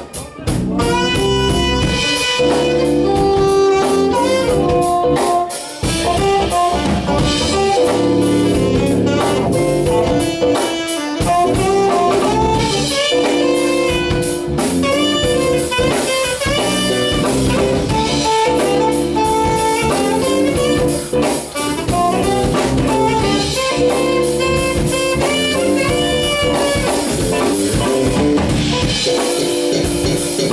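Live funk band playing, with a saxophone carrying the lead line over drum kit, electric guitar and keyboards.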